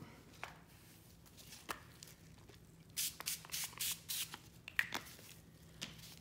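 Small pump-spray bottle of walnut stain misted onto a sheet of parchment paper: about five or six quick hissing sprays in a row, about three seconds in, after a few faint handling clicks.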